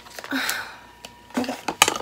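Cosmetic product packaging being handled, a cardboard box and a plastic tube: a few light clicks and a brief rustle, with a short spoken "okay" near the end.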